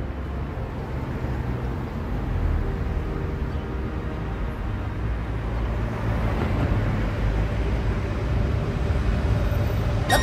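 Low, steady rumble with a faint hum, slowly growing louder: an ambient sound-effect interlude between parts of the song, with the character of a vehicle's cabin noise.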